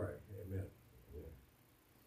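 A man's speaking voice closing a prayer for about the first second, with a short last word just after, then quiet room tone.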